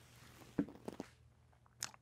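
Wooden chess pieces handled on a board: a few soft knocks about half a second to a second in, and one sharper click near the end, as pieces are picked up and set down.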